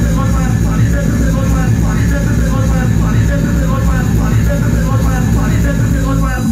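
Hard techno or hardcore track playing loud over a club sound system: heavy bass under a fast repeating synth figure.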